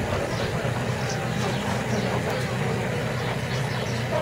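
Steady low rumble and hiss of outdoor background noise, with faint voices in the crowd.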